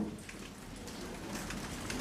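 Faint, rapid clicking like a patter over low room noise, typical of press cameras' shutters firing at a document held up at a press conference.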